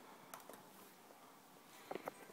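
Near silence: room tone, with a few faint clicks, a couple early and a small cluster near the end.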